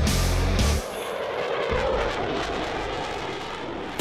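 Music cuts off under a second in, giving way to a rushing jet fly-by sound effect that swells a little and fades.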